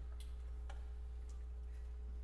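A quiet pause in a concert hall with no music playing: a steady low hum and a faint steady tone, with three faint scattered clicks.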